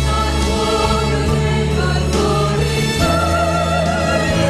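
A choir singing long held notes over steady accompaniment, the chord changing about three seconds in.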